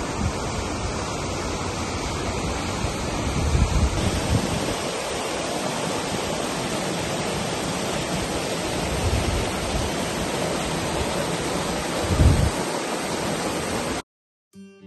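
Rushing water of a small mountain stream cascading over rocks, a steady hiss of falling water. There are brief low wind buffets on the microphone a few seconds in and again near the end.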